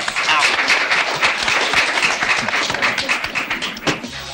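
A crowd clapping, many quick irregular claps with voices mixed in.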